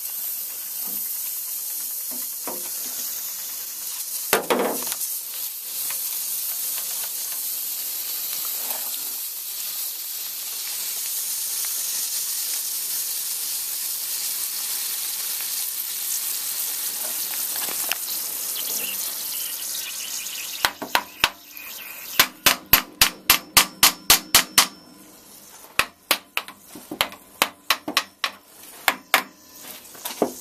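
A steady hiss from the opened compressor head joint of a water-logged refrigeration compressor. About two-thirds of the way in it gives way to a run of loud, sharp metallic clicks, about four a second, then fewer and sparser clicks: tools at work on the head bolts.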